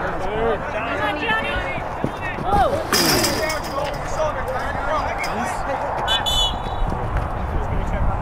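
Open-air youth soccer match: scattered shouts and calls from players and sideline spectators over a steady low outdoor rumble, with a brief high-pitched tone about six seconds in.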